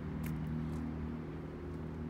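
Car engine idling: a steady low hum, with a couple of faint ticks in the first second.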